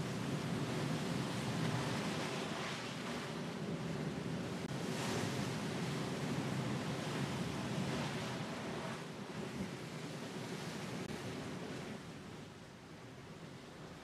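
Rough open sea: waves and wind making an even rushing noise that swells and eases every few seconds, fading somewhat near the end.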